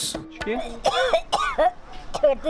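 A person's voice in short bursts, words not made out.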